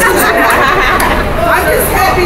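Several people talking at once: indistinct crowd chatter, with a low steady rumble underneath.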